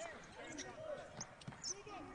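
Faint on-court game sound: a basketball bouncing on a hardwood floor as it is dribbled, with scattered knocks and distant voices.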